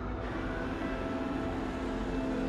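An ambulance approaching on the road, a low rumble of engine and tyres that grows slightly louder, under steady sustained music tones.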